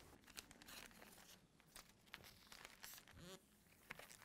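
Faint, scattered crinkling of plastic vacuum bagging film as it is pressed and smoothed down to seal the bag; otherwise near silence.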